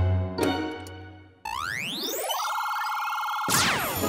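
Cartoon machine sound effect: after the music dies away, an electronic whir starts suddenly about a second and a half in, rises in pitch and levels off into a steady held tone, then a quick falling swoosh of tones near the end as the transformation takes place.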